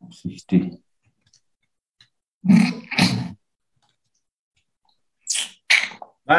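Speech only: a voice in a few short utterances, with dead silence between them.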